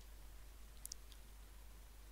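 Near silence with a few faint clicks about a second in, from a stylus writing on a pen tablet.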